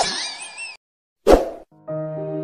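The last of a baby's laughter fades out. After a short silence comes a single sharp pop-like editing sound effect, the loudest thing here, and soft sustained music begins just before the end.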